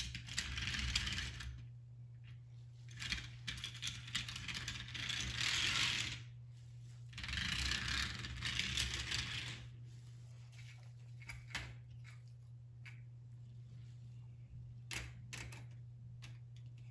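HO-scale model train cars handled and pushed along the track by hand: three rattling, rustling runs of a second or more each, then a few separate sharp clicks near the end, over a steady low hum.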